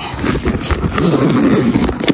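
Metal zipper of a handbag being pulled open, a rough rasping run of many small clicks, with rubbing and handling noise of the bag.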